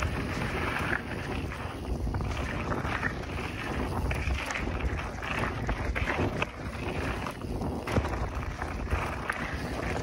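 Wind buffeting the microphone over the rush and rattle of a mountain bike's tyres on a dirt trail as it descends at speed, with scattered knocks from bumps.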